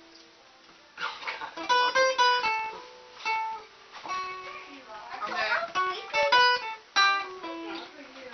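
Acoustic guitar played with single picked notes and short phrases, starting about a second in, each note ringing briefly.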